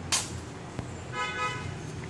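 A big H'mong knife blade slicing through a hand-held sheet of paper in one quick stroke just after the start, a test of its very sharp edge. Around the middle a brief pitched toot sounds in the background.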